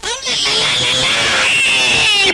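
Film sound effect of a giant serpent monster screeching: one long, shrill, wavering cry.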